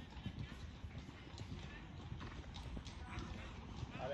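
Hoofbeats of a horse cantering on sand arena footing: repeated dull, low thuds.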